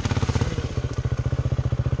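Dirt bike engine running at low revs with a rapid, even firing beat as the bike moves off slowly.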